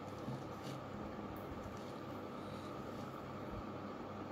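Low steady room hum and hiss, with a few faint soft ticks as a kitchen knife cuts through firm, set fudge on a plastic tray.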